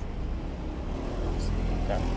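Steady low rumble of motor traffic with a faint engine hum, with a faint voice near the end.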